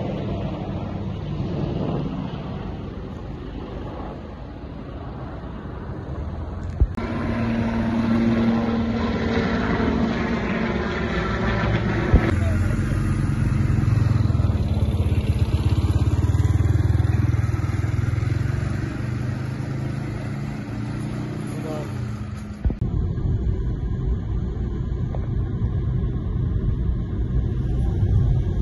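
Vehicle engines with men's voices: a military truck's engine rumbling steadily as it idles among a group of men talking. Near the end it changes to the engine and road noise of a moving car.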